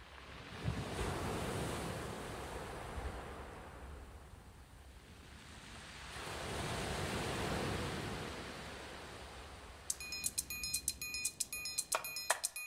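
Ocean waves washing in, two slow swells of surf, as an intro to the recording. Near the end, sharp percussion strikes with a ringing tone start up in a quick rhythm.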